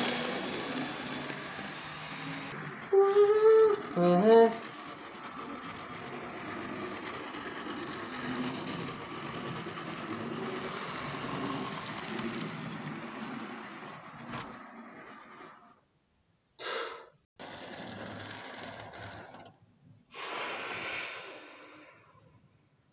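A model train running fast along the track, its wheels and motor making a steady rumble that fades out after about fifteen seconds. Two short voice-like calls come about three and four seconds in, and near the end the sound comes in short separate stretches.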